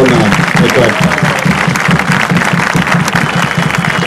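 Crowd applauding, with a fast, even low beat running underneath.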